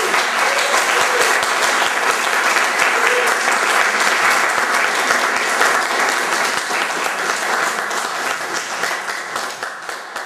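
Audience applauding, dense and steady at first, then thinning out into a few scattered claps near the end.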